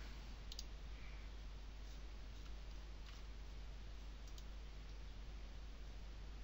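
A few faint, irregular computer mouse clicks as objects are selected and dragged, over a steady low hum.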